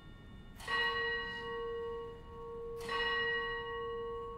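A single church bell rung at the elevation of the host, struck twice about two seconds apart, each stroke ringing on long after.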